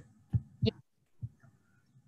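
Two short, soft thumps about a third of a second apart, then a fainter one a little later, heard over a video-call line.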